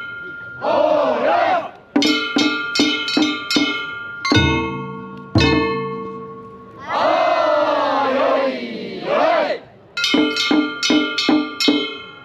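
Festival float music of quick strikes on a ringing metal gong with drum beats, broken twice by long, drawn-out shouts from a group of men: once just after the start and again from about seven to nine and a half seconds in.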